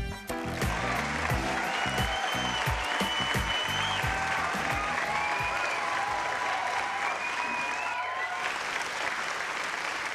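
Audience applause and cheering, with intro music and its beat fading out under it over the first few seconds.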